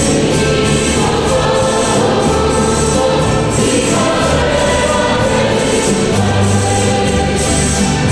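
Voices singing a hymn together with instrumental accompaniment: a low bass line changing note every second or so under a steady rhythmic beat.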